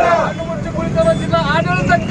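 Protest crowd shouting a slogan together in answer to a leader's call, the voices raised and drawn out.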